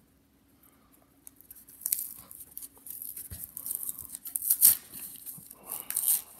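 Corrugated cardboard mailer being torn open by hand. Near quiet for the first two seconds, then a run of crackling rips and crunches, loudest about two-thirds of the way through.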